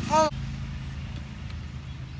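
A steady low mechanical hum that goes on without change, after a short exclaimed "oh" at the start.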